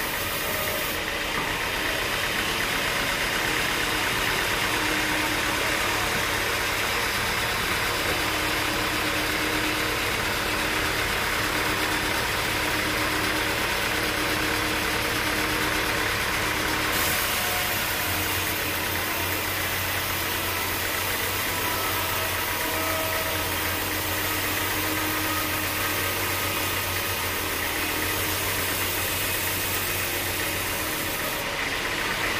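Vertical band sawmill running steadily, its blade sawing through a teak log fed past on the carriage: a loud, continuous mechanical hiss and drone, its tone shifting a little past the halfway point.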